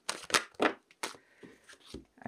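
Tarot cards being shuffled and dealt by hand: several sharp card snaps in the first second, then softer, fainter rustles as the cards are laid out.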